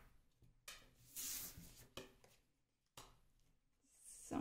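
Faint sliding and light taps of oracle cards being gathered up off a wooden table: a soft rustle about a second in, then a few small clicks, between near-silent stretches.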